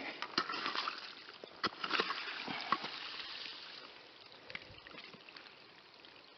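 Small trickle of water running through a gravelly trench, washing out soil thrown into it. A wooden stick scrapes and clicks against the gravel in the first half, and the sound gets quieter over the last couple of seconds.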